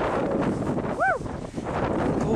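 Wind buffeting a handheld camera's microphone, a steady rough rumble. About a second in comes a brief pitched sound that rises and falls.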